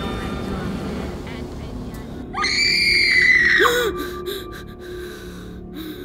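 A woman's high-pitched scream, about a second and a half long, starting a little over two seconds in, rising sharply, holding and then dropping away. It sits over a low, dark music drone.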